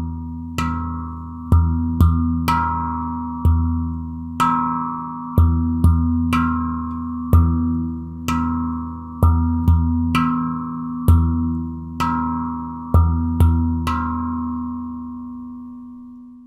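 Steel handpan played with the hands: a repeating rhythm of low ding strikes on the central dome and accent hits, each note ringing on under the next. The last note rings out and fades near the end.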